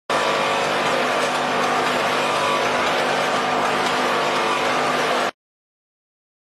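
Automatic multihead weigher and vertical bagging machine running: a steady mechanical noise with a few constant hum tones under a hiss, cutting off suddenly about five seconds in.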